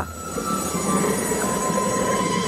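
A steady magic sound effect for a glowing power-up: a held high tone over a dense shimmering hiss.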